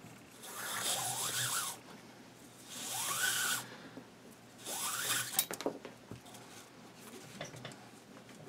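Nylon paracord drawn through a woven wrap on a rifle's folding stock: three long rubs of cord, about a second each, with a couple of sharp clicks just after the third.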